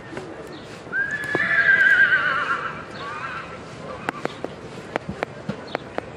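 A horse whinnying for about two and a half seconds, starting about a second in, its pitch wavering quickly and dropping at the end. It is followed by a scatter of sharp clicks, likely hoofbeats.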